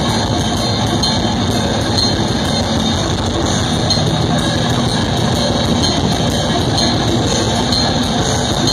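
Death metal band playing live through a festival PA: distorted electric guitars and bass over rapid, relentless drumming, an instrumental stretch with no vocals.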